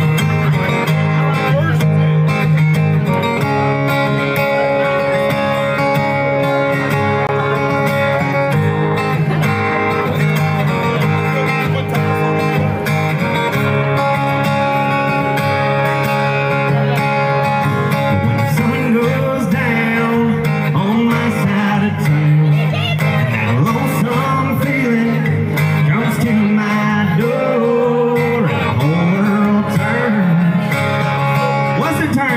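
Two acoustic guitars playing a song live, with a man singing over them through the second half.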